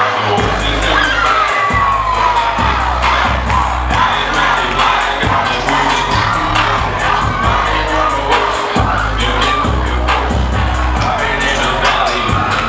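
Dance music with a heavy bass line that kicks in just after the start, under an audience cheering and shouting.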